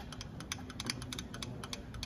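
Hunter benchtop brake lathe's head unit being cranked back by hand: a rapid, uneven run of light clicks from the feed mechanism.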